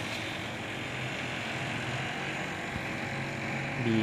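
Steady background hum with a faint hiss and no distinct event; a voice begins right at the end.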